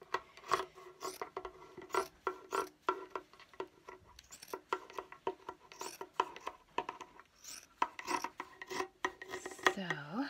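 Fabric scissors cutting through several layers of folded cotton t-shirt knit in quick repeated snips, about three a second. The scissors are not the sharpest: 'maybe these aren't my sharpest scissors.'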